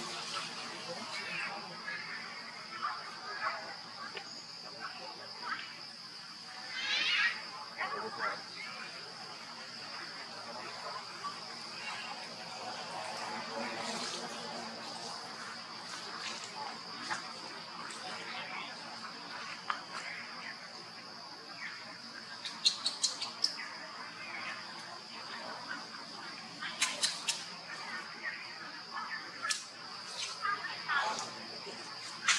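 Steady high-pitched insect drone in forest, with scattered faint clicks and short chirping calls, and a few sharp ticks in quick succession about three-quarters of the way through and again near the end.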